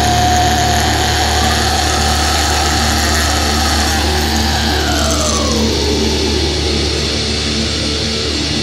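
Heavy metal music: a dense, distorted sustained passage over a steady low drone, with a held note that bends slowly down in pitch about five seconds in.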